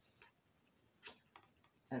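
A pause that is almost quiet, with a few faint short clicks: one near the start and two or three more a little after a second in.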